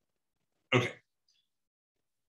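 A single brief vocal sound from a man about a second in, short and sharp, with near silence around it.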